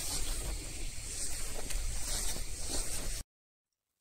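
Pesticide spray lance hissing steadily as it mists grapevines, with a low rumble underneath; the sound cuts off abruptly about three seconds in.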